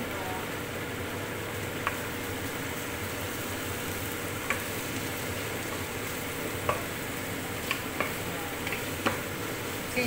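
Diced chicken breast and onions sizzling steadily in oil in a nonstick frying pan, stirred with a wooden spatula, with a few sharp clicks of the spatula against the pan, more of them in the second half.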